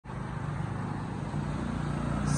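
A steady low motor hum, a little louder in the second half.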